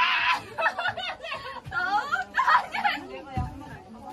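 Young women's voices chattering excitedly, with giggling mixed in during playful horseplay.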